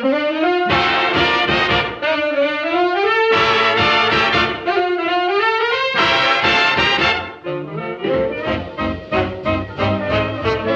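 Background music: sustained chords with notes sliding upward, breaking into short repeated notes in the last couple of seconds.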